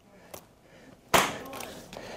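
A single sharp plastic snap about a second in, as the lower buckle of an alpine ski boot is latched shut on the foot.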